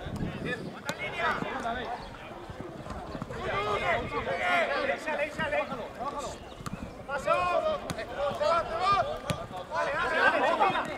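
Players and spectators shouting during a football match, in bursts of calls, with a few sharp knocks from the ball being kicked.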